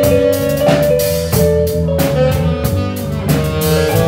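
Live band playing a jazzy blues groove: electric guitar, electric bass and drum kit, with a saxophone holding notes over the top.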